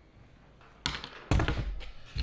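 A sharp snip about a second in as wire cutters cut the wire off a non-reusable push-in connector, followed by a thunk and brief clatter as the tool and parts are set down on a workbench.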